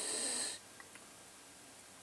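A short breathy hiss from a person, about half a second long at the start, followed by quiet room tone.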